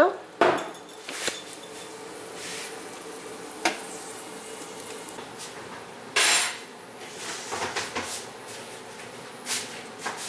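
Kitchenware handling: a ceramic frying pan and utensils clinking and knocking on an electric stove top, a few separate sharp knocks, with a louder brief burst of noise about six seconds in.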